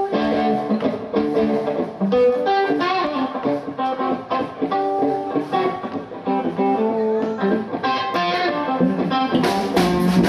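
Electric guitar playing a blues intro of picked single-note licks. Near the end the drums come in with a cymbal crash.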